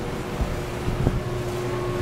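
Steady low hum of office room noise, with a soft thump about half a second in and a click about a second in.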